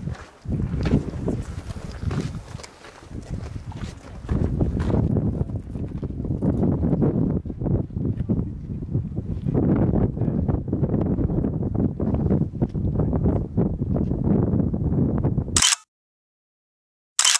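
Wind rumbling on the camera microphone, mixed with footsteps and scuffs on stone steps and rock. It cuts off suddenly near the end with a short sharp click.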